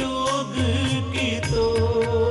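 Sikh kirtan: a male voice singing a shabad over sustained harmonium chords, with tabla strokes and the deep pulsing bass of the bayan drum keeping the beat.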